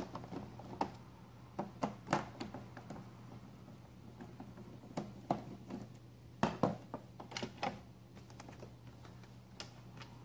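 Irregular clicks and taps of a screwdriver and hard plastic as the captive screws of a Roomba's bottom plate are backed out and the plate is handled, in loose clusters of sharp clicks.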